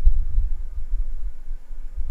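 A low, uneven rumble with nothing higher-pitched above it.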